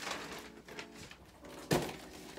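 Plastic mailer bag rustling as a cardboard shoebox is handled, with one thump near the end as the box is set down on a stool.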